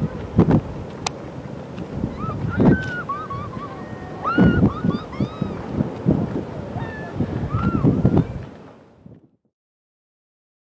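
A paraglider pilot whooping and yelling with joy in flight, short calls that swoop up and down in pitch, over gusty wind on the microphone. The sound fades out a little before the end.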